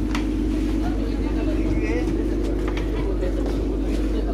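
Tourist boat's engine idling with a steady low drone while people chatter aboard.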